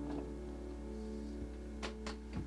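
Upright piano notes held and ringing out as a piece ends, with one sharp click near the end.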